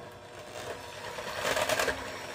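KitchenAid electric hand mixer running steadily with its beaters in a stainless steel bowl of liquid, a steady motor whir, with a louder swishing rush near the end.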